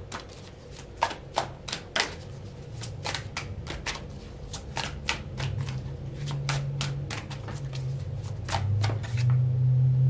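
A deck of oracle cards shuffled by hand: irregular card snaps and slaps, a few each second.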